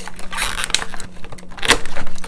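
A few sharp plastic clicks and light rustling from a toy action figure and its packaging being handled, the loudest click near the end.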